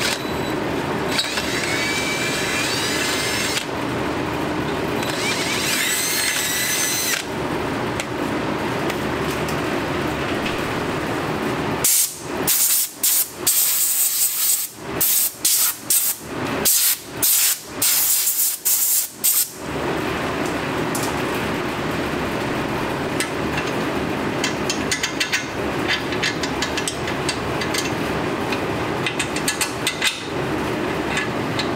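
Cordless drill boring out a steering knuckle's caliper bolt hole: the motor runs twice in the first seven seconds with a rising whine. In the middle, a series of short, loud hissing blasts of compressed air are fired from an air hose at the knuckle.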